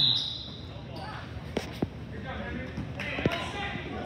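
A basketball bouncing a few times on a hardwood gym floor, with faint voices in the hall.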